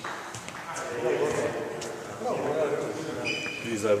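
Men's voices talking in a large gym hall, with a few light clicks and a brief high squeak near the end.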